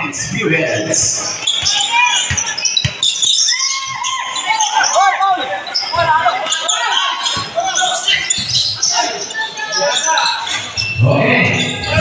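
Basketball bouncing on a hardwood gym floor during live play, a series of irregular thuds, over players' and spectators' voices and shouts echoing in a large hall.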